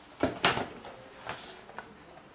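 Cardboard product boxes being picked up and handled: a few knocks and scrapes, the loudest about half a second in, then fainter taps.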